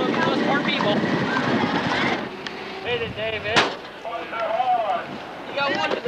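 Wind rumbling on the microphone over crowd noise, cut off abruptly about two seconds in. Then people call out in high voices, with one sharp bang a little past halfway.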